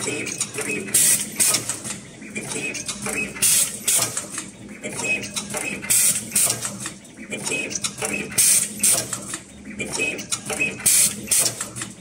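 Automatic single-head wire cutting, stripping and terminal crimping machine running through its cycle: clicking and clattering mechanisms, with a loud, sharp burst about every two and a half seconds as each wire is processed.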